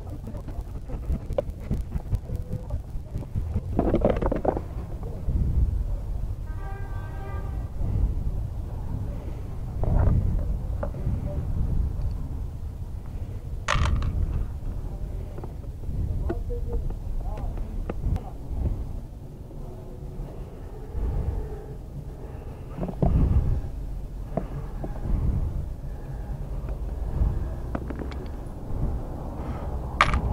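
Screwdriver and plastic handling sounds on a Yamaha Xmax 250 scooter's air filter cover: scattered clicks and knocks as the cover's screws are undone and the panel is pulled off, over a steady low rumble. A sharp click comes about fourteen seconds in.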